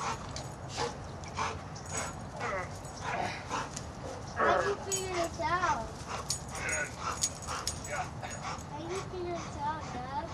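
A large black dog whining and yipping in short, high calls every few seconds.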